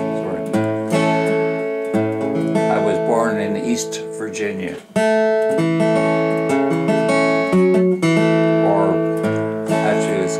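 Acoustic guitar playing chords, picked and strummed, with a brief break just before a strong chord about five seconds in.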